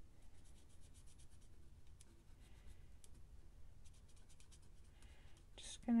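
Marker tip scratching over paper in quick back-and-forth coloring strokes, faint, coming in a few short runs with brief pauses between them.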